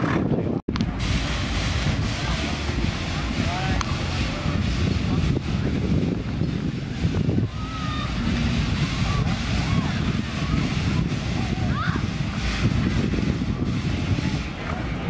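Outdoor showground ambience: wind buffeting the microphone in a steady low rumble, with indistinct distant voices. The sound cuts out for an instant about half a second in.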